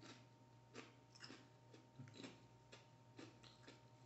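Faint, irregular crunching of a person chewing Doritos 3D puffed corn chips with the mouth closed.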